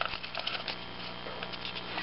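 Plastic recoil-starter pulley of a Tecumseh small engine being turned by hand in its housing against the rewind spring, with light scattered clicks and rubbing. The pulley is being wound a counted number of turns, four in all, to take up the length of the new pull cord.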